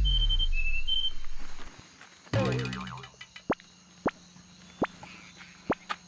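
Comic sound effects laid in by the editors: a loud low falling glide with three short high whistle pips over it, a second falling glide about two seconds in, then a few sparse short plops.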